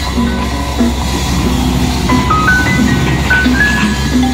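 Background music: a bright melody of short plucked, chime-like notes stepping up and down over a repeating bass line.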